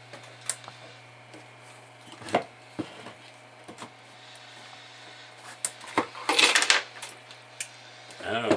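Scattered sharp clicks and light knocks of metal parts and a tube radio chassis being handled on a wooden bench, with a short burst of clatter about six seconds in, over a steady low hum.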